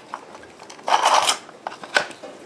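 A 220-volt plug being pushed into its receptacle: a short scraping rub of the prongs forced into the slots about a second in, and a sharp click near the end.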